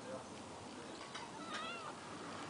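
Persian cat meowing once, a short, high meow about one and a half seconds in.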